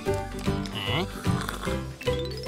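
Children's cartoon background music with a steady, bouncing bass line, and a short high-pitched sound about three-quarters of a second in.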